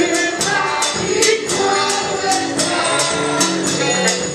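A choir singing a gospel worship song over a drum kit and percussion keeping a steady, quick beat.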